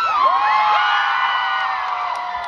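Concert audience cheering and screaming: many overlapping high screams and whoops held over a haze of crowd noise, loudest about half a second in and then slowly dying down.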